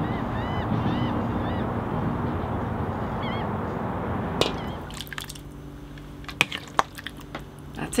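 Steady rushing waterside noise of water and wind, with a bird chirping in short rising-and-falling calls a few times. About four and a half seconds in, it gives way to a quieter steady indoor hum with a few light clinks.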